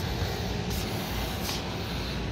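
Steady low hum and rush of rooftop air-conditioning equipment running, with a faint, brief rustle or two.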